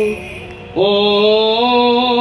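Greek Orthodox Byzantine chant by a male voice: a long held note breaks off at the start, and after a short pause a new sustained note begins about three-quarters of a second in, stepping up slightly in pitch near the end.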